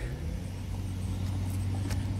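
A steady low motor hum with a low rumble beneath it, and two faint clicks near the end.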